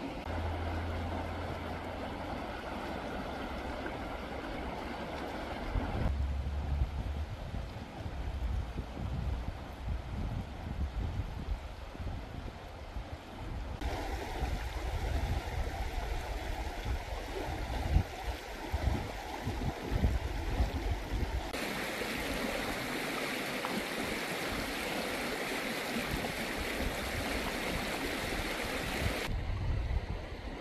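Shallow river water running past stone bridge piers, a steady rushing hiss, with wind gusting on the microphone. The background changes abruptly several times.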